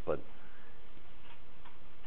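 A man's voice says one short word, then the steady hiss of the recording's background noise during a pause in speech.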